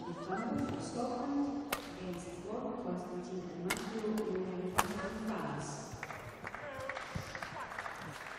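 Badminton rackets striking a shuttlecock in a rally: three sharp cracks, the second about two seconds after the first and the third about a second later, over background voices in a large hall.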